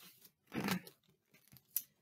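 A page of a paperback picture book being turned: a short paper rustle about half a second in, then a small click near the end.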